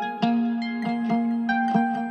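Plucked guitar melody of a trap instrumental beat, playing on its own in a breakdown with the 808 bass and drums dropped out. A run of picked notes repeats several times a second.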